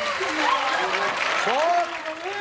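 Studio audience applauding, with voices calling out over it.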